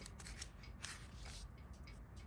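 Soft rustle of a Hobonichi 5-year diary page being turned by hand, loudest about a second in.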